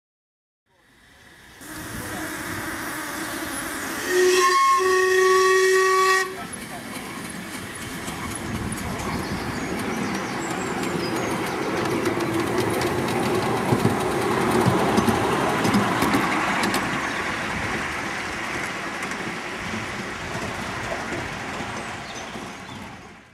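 Live-steam miniature model of the LMS Coronation-class locomotive Duchess of Sutherland. About four seconds in it gives a short toot and then a whistle blast of about two seconds. After that the engine runs along the track with steam exhaust and wheel noise, growing louder towards the middle, with a few sharp clicks, then easing off.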